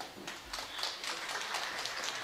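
A pause in a man's speech over a podium microphone, leaving faint, steady hall noise with a few soft knocks and a low thump about half a second in.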